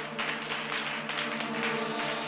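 Dramatic background score: a held low chord under a steady, noisy shimmering wash.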